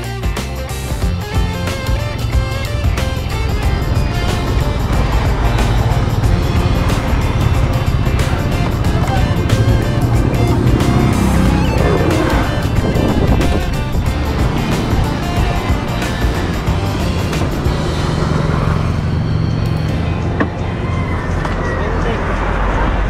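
Background guitar music in the first part gives way to the road noise of a Yamaha Aerox scooter being ridden, with its engine and wind on the microphone. About halfway through, a passing motorcycle's engine rises and falls.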